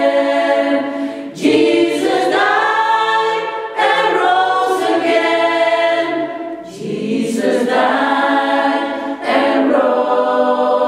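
Choir singing a cappella in several parts: held chords in phrases, with short breaks between them about every two to three seconds.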